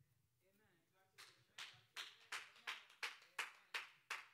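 Steady rhythmic hand clapping, about three claps a second, starting a little over a second in and growing louder.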